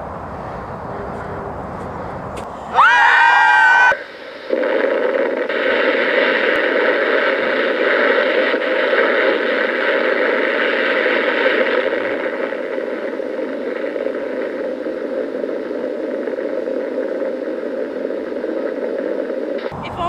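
A person screams for about a second. Then comes a long, steady roar of a huge explosion from archival blast footage, played back through small speakers so it sounds thin, with no bass. It is loudest in its first several seconds and eases slightly toward the end.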